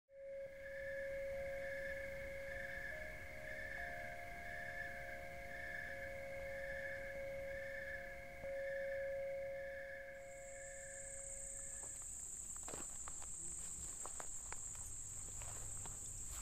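Steady tones for the first twelve seconds: a low one with a higher, slowly pulsing pair above it. About ten seconds in, a high, continuous insect trill from field insects such as crickets sets in and carries on. It is joined by faint ticking steps on a gravel track.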